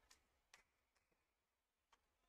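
Near silence with a few faint, sharp ticks: one about half a second in and another near the end.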